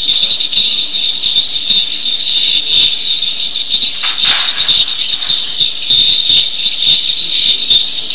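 A loud, steady high-pitched whine with brief crackling clicks over it.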